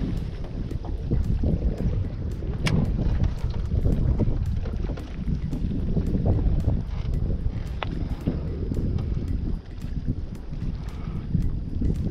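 Wind buffeting the camera microphone: a low rumble that rises and falls in gusts. Two short, sharp ticks come through it, about a quarter and two thirds of the way in.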